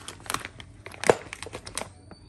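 Clear plastic bag crinkling as it is handled. It is a quick run of sharp crackles, loudest about a second in.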